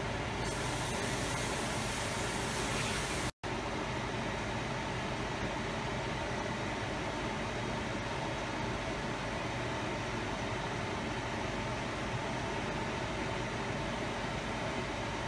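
Steady bubbling hiss of a pot of rice at a rolling boil on a gas burner, briefly cut off for an instant about three and a half seconds in.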